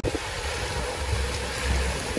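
Small waves washing onto a sandy beach, a steady hiss of surf, with wind rumbling on the microphone.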